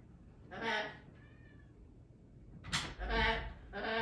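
African grey parrot vocalizing: a run of short pitched cries with a faint thin whistle between the first two. The loudest cry comes a bit under three seconds in, opening with a sharp high squeak.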